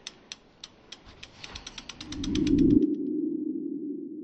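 Logo-animation sound effect: a run of sharp ticks that speeds up, then a low hum swells in about two seconds in. The hum carries on and slowly fades after the ticks stop.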